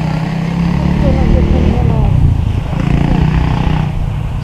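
An engine running steadily, a low hum, with people talking in the background.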